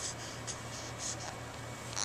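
Soft, scratchy rustling of fabric as a baby's arms brush over a fleece blanket, several short brushes a second, over a low steady hum.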